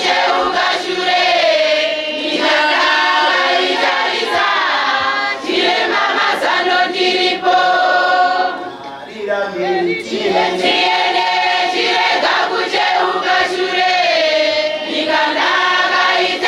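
A congregation singing a hymn together in chorus, many voices at once, with a short lull about nine seconds in before the full singing returns.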